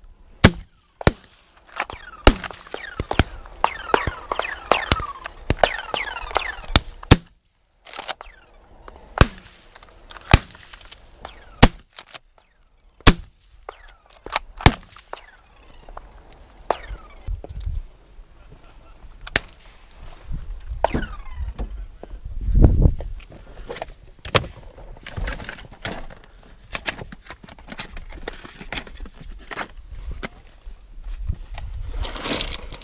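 12-gauge shotgun shots at a dove hunt: a long string of sharp blasts, some close and very loud and others fainter, coming about once a second through the first half and more sparsely later. About two-thirds of the way through there is a brief loud low rumble.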